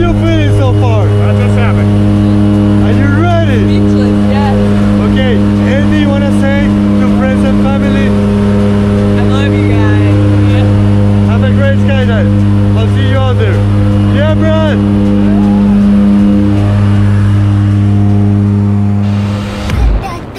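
Jump plane's engine and propellers droning steadily inside the cabin, with people's voices over it. The drone stops abruptly near the end.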